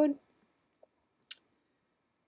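A single short, sharp click about a second and a half in, against otherwise near silence.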